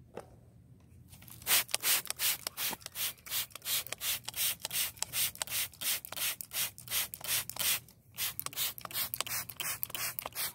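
Handheld trigger spray bottle pumped in quick succession, a short hiss of spray with each squeeze, about three squeezes a second. It starts about a second in and pauses briefly near the end.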